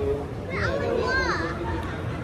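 Voices talking in the background, one of them high-pitched, over a steady low hum of a busy shop.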